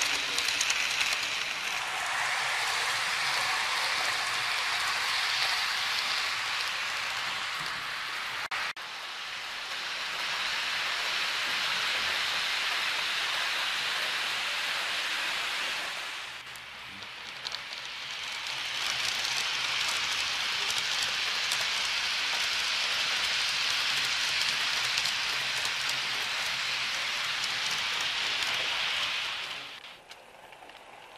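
Model trains rolling along the layout's track: a steady rushing hiss of small metal wheels on the rails, with a sudden break a little under nine seconds in and a brief dip just past halfway.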